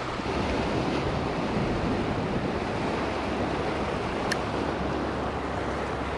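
Shallow Gulf surf washing in over the sand, a steady hiss of small breaking waves, with one faint click about four seconds in.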